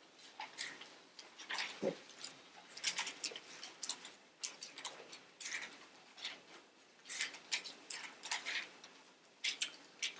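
Pages of a Bible being turned and leafed through by hand: a quick, irregular run of short papery rustles and flicks, one or two a second.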